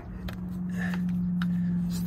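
A steady low hum held at one pitch, with two brief light clicks of a wrench against metal as it is fitted to the truck's belt tensioner.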